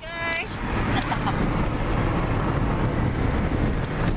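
Steady road and engine noise inside a moving car's cabin, a low rumble with a hiss over it, and a brief voice sound at the very start.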